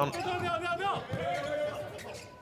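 Court sounds of an indoor volleyball rally: high-pitched squeals from players' shoes on the court floor, mixed with players' shouts, in two drawn-out stretches with a quick pitch sweep between them about a second in.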